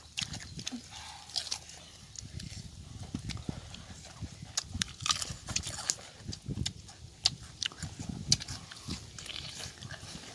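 Close-up chewing and lip-smacking of cooked squid, with irregular wet mouth clicks throughout.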